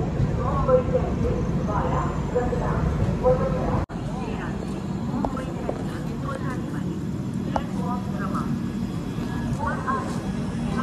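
Passenger train rolling slowly along a station platform, heard from the coach doorway as a steady low rumble with people's voices over it. About four seconds in it cuts abruptly to quieter platform noise: people talking and moving near a stopped train.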